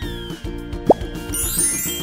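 Cartoon background music with a steady beat. About a second in comes a short 'plop' sound effect that falls quickly in pitch. Near the end a high, tinkling sparkle effect rises.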